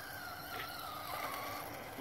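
Traxxas Stampede RC monster truck's electric drive whining as it is driven, the pitch wavering a little with the throttle and dying away shortly before the end.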